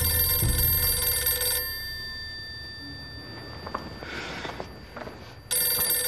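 Corded landline desk telephone ringing in its on-off cadence: one ring ends about a second and a half in, and after a pause of about four seconds the next ring starts near the end.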